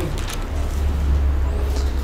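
A steady low rumble that builds about half a second in, like a heavy road vehicle passing.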